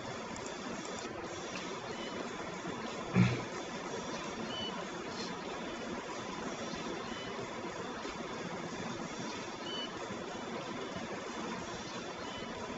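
Faint steady machine and vehicle noise of automated forklift AGVs moving pallets in a warehouse, as heard from the played video, with faint short high chirps every second or two. A brief louder sound comes about three seconds in.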